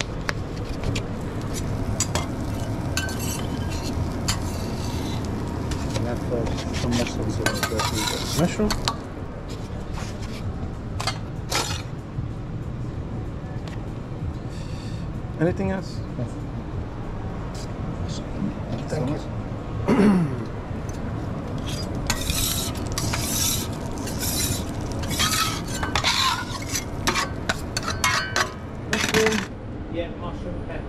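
Metal serving tongs and spoons clinking and scraping against steel buffet pans as food is dished onto a plate, in scattered clicks and clatter over a steady low kitchen hum. A short, louder falling tone sounds about two-thirds of the way through, and the clinking grows busier near the end.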